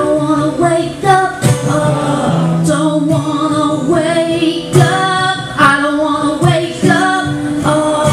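A woman singing live, holding long notes, over a strummed acoustic guitar.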